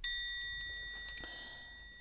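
A single bright metallic chime, struck once, ringing with several high tones and fading away slowly over about two seconds.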